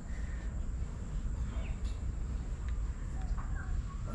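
Outdoor background: a steady low rumble with a thin high steady tone, and a few faint short bird chirps, one about one and a half seconds in and a couple near the end.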